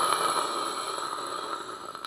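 Cartoon fire-breath sound effect: a steady hissing rush with a faint high whine running through it, slowly fading and cutting off near the end.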